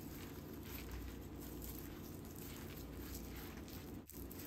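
Faint rustling of plastic twine being braided by hand, over a low steady hum.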